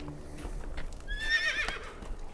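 A horse whinnies once, about a second in: a short, wavering call that falls in pitch.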